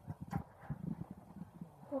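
Irregular soft clicks and taps, a few a second, with no steady rhythm.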